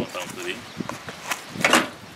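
People talking while the steel wheels of a small rail draisine are handled and shifted on the track, with a short, loud scrape about three-quarters of the way through.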